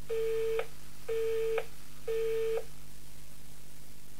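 Telephone busy tone after the caller hangs up: three steady beeps, each about half a second long, a second apart.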